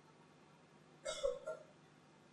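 A short two-part vocal sound from a person, about a second in, against quiet room tone.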